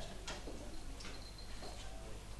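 A few faint, sparse clicks and taps over low background hum, with no playing or talking.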